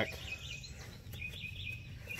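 Birds chirping in the background: short, high chirps scattered through a low, steady outdoor noise, with a couple of faint clicks.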